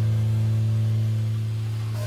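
Jazz quartet holding one long, steady low note or chord, fading slightly without a break.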